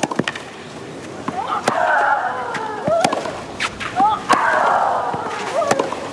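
Tennis rally on a clay court: the ball is struck back and forth, with sharp racket hits about every second and a half and short vocal grunts from the players on some of the shots.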